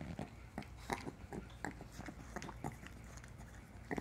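Small dog licking a man's head and face: quick, irregular wet tongue smacks and slurps, several a second, with a louder smack near the end.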